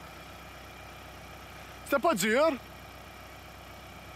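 John Deere compact utility tractor's diesel engine running steadily as the tractor drives slowly, a low even hum under a man's single spoken word about two seconds in.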